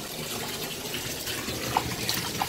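Water running steadily from a tap into a bathtub.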